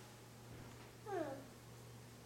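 A young child's short vocal cry, falling in pitch, about a second in, over a steady low room hum.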